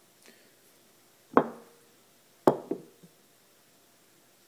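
Sharp knocks of a spoon and a glass being picked up and handled: one hard knock with a brief ring a little over a second in, then a quick cluster of three about a second later.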